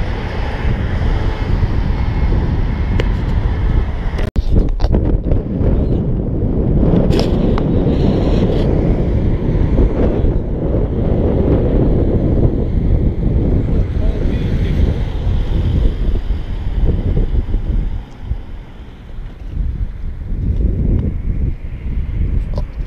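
Strong wind buffeting the camera microphone: a loud, gusty rumble that lulls briefly about eighteen seconds in, then picks up again.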